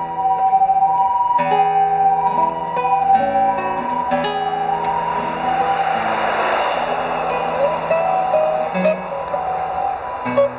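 Solo classical (nylon-string) guitar, played fingerstyle through a microphone: a melody of single plucked notes over bass notes. A rushing noise swells and fades behind it around the middle.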